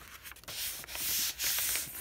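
A sheet of paper rustling and rubbing as it is handled over a gelli plate, in two or three swells.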